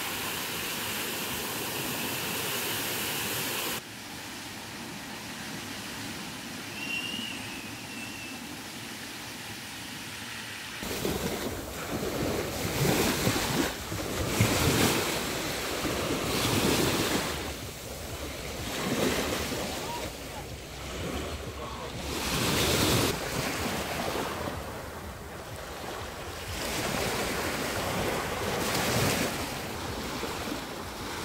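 Small Black Sea waves washing onto a sand beach, each swell rising and falling every two to four seconds, with wind buffeting the microphone. It is preceded by the steady hiss of a park fountain's spray.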